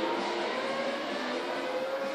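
Race car sound effect played over a large hall's PA system, a dense rushing sound with a faint slowly rising whine.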